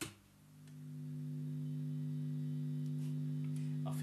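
Newly built T-type electric guitar sounding through an amplifier for the first time: a pick attack, then a single sustained note that swells up over about a second and holds steady without fading.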